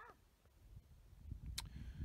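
Faint outdoor quiet: a low, uneven rumble of wind on the microphone, with one short click about one and a half seconds in.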